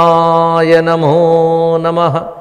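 A man's voice intoning a Sanskrit invocation in a chanting monotone, holding one syllable on a steady note for about two seconds, with a brief dip in pitch about a second in.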